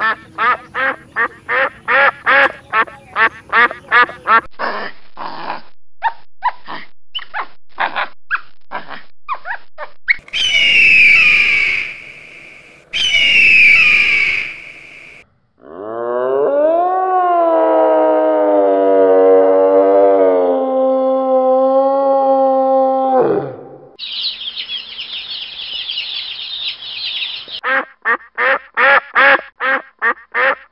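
Ducks quacking in rapid runs of about four calls a second, then slower, spaced calls. Partway through come two loud, harsh cries, then one long call that rises in pitch and holds steady for about seven seconds, and a high rasping stretch. Rapid quacking returns near the end.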